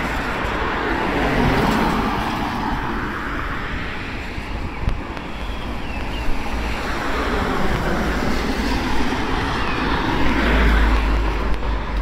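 Road traffic on a wet street: a steady hiss of tyres and engines, swelling as a vehicle passes about a second or two in and again near the end, with low wind rumble on the microphone.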